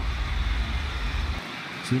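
Arena crowd noise, a steady murmur under a boxing broadcast, with a low rumble that cuts off about one and a half seconds in.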